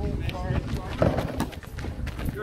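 Indistinct voices of basketball players calling out on the court, over a low rumble of wind on the microphone.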